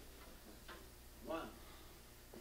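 Quiet session tape between takes: a steady low hum, a faint click, and a brief murmur from a voice about a second and a half in.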